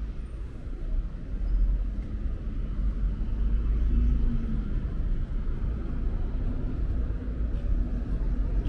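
Steady low rumble of city road traffic, with a passing vehicle's engine hum swelling briefly about four seconds in.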